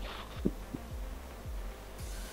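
Repeated low thumps, each dropping quickly in pitch, over a steady low hum: a heartbeat-like pulse in background audio.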